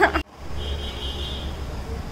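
A woman's voice ends at the very start and the sound cuts out for a split second, then a steady low background hum continues, with a faint thin high whine for about a second in the middle.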